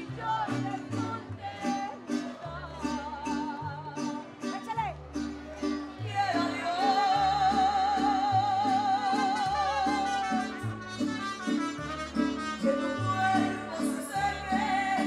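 Live Mexican popular music: a woman singing over a band with a steady stepping bass line. Around the middle comes one long held note with vibrato.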